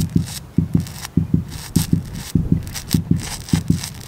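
A rhythmic series of short low thumps, about three to four a second, some falling in close pairs.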